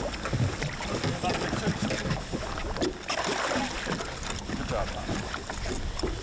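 Wind buffeting the microphone outdoors, with faint, indistinct talk from the anglers breaking through now and then.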